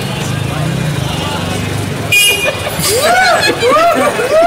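Street traffic: a low engine hum, then a short vehicle horn toot about halfway through. In the last second a person's voice makes repeated swooping calls that rise and fall in pitch.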